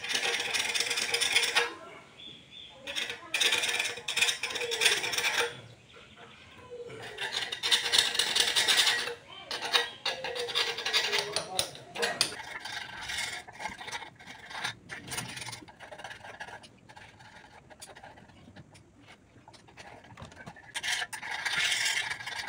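A metal tool scraping melted plastic bag off a Honda motorcycle's exhaust pipe, in rasping strokes of a second or two with pauses between.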